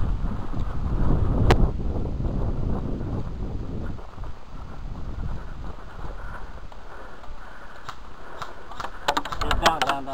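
Rustle and rumble of a player's gear and movement picked up by a hat-mounted camera, loudest in the first few seconds with one sharp click. A quick run of sharp clicks comes near the end.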